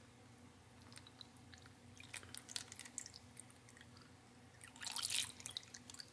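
Faint trickle and drips of tap water poured from a plastic container onto rockwool cubes in a plastic tray, soaking them. The pour gets louder about five seconds in.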